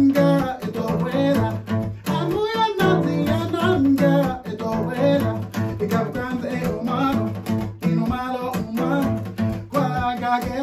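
Acoustic guitar strummed in a steady rhythm, with a man singing over it in places.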